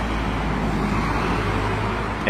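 Steady road traffic noise from cars passing on a city street, a low continuous rumble.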